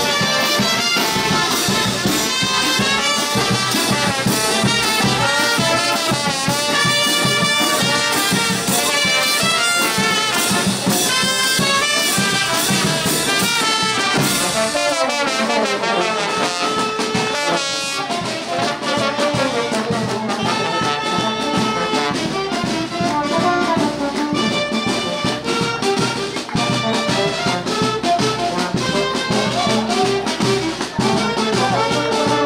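Loud brass-led Latin dance music, with trumpets and trombones carrying the tune. About halfway through, a long glide falls steadily in pitch before the band carries on.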